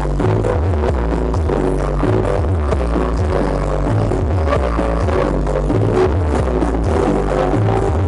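Loud dance music with a heavy bass beat.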